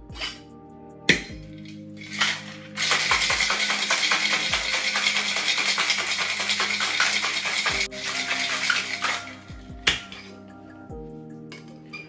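Ice cubes rattling hard inside a Boston shaker (stainless tin over a mixing glass) shaken vigorously for about five seconds, in a dense, fast clatter. A single sharp knock on the shaker comes about a second in, and another near ten seconds as the tin and glass are parted.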